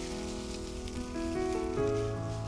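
Dry, crumbled leaves crackling and pattering as they are crushed by hand and scattered onto soil, over soft background music with sustained notes that change pitch about halfway through and again near the end.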